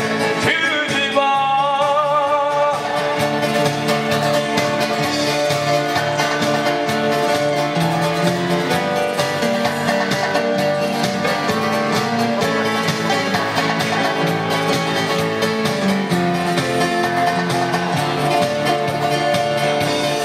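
Live song with acoustic guitar through a PA speaker. A sung note with vibrato is held and ends about three seconds in, then the music runs on mostly instrumental, with steady strummed chords and held notes.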